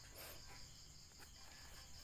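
Near silence: faint, steady, high-pitched insect chirping, an even fast pulsing like crickets, behind quiet room tone.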